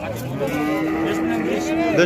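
Cattle mooing: one long, steady, low moo.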